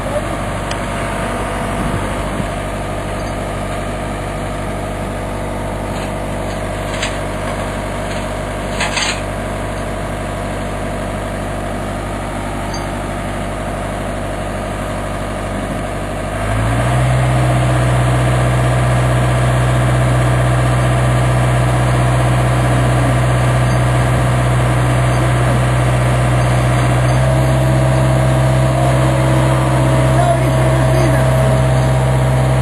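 A John Deere excavator's diesel engine running steadily, then speeding up and getting louder about halfway through and holding the higher speed as the hydraulics take the load. A couple of brief knocks come a few seconds before the change.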